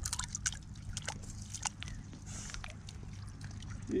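Shallow running water trickling through a concrete channel, with many small irregular drips and plinks.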